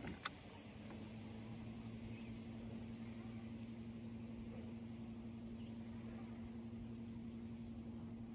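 Electric trolling motor humming steadily and faintly, a higher tone joining the low hum about half a second in. A single sharp click just before.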